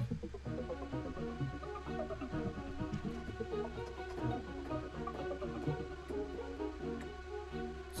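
Virtual string ensemble playing back from a DAW, layering articulations: quick short staccato notes over tremolo strings, with a steady low drone underneath. It demonstrates the different roles the string articulations play in an arrangement.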